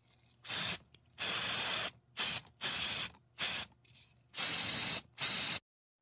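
Aerosol spray paint can hissing in seven separate bursts, some short and some nearly a second long, as paint is sprayed on in strokes.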